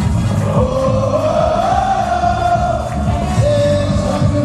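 Live raï music played loud through a concert sound system: a dense, driving beat under one long, wavering melody line that is held and bent over several seconds.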